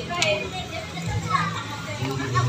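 Children's voices chattering over background music.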